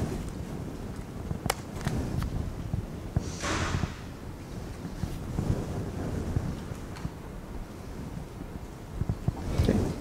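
Room tone of a lecture hall: a steady low rumble with a few soft clicks, one sharper click about a second and a half in, and a brief hiss about three and a half seconds in.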